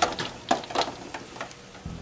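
Light clicks and clinks of a metal ladle and boiled quail eggs against a pot and bowl as the eggs are lifted out, about six short taps in two seconds.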